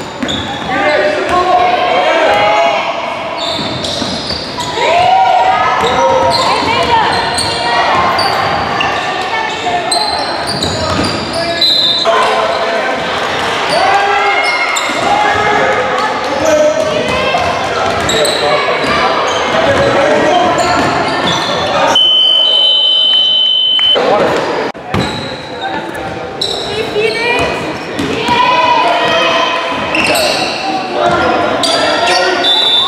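Basketball being dribbled on a hardwood gym floor amid echoing voices of players and spectators in a large hall. About two-thirds of the way through, a single steady high whistle sounds for about two seconds.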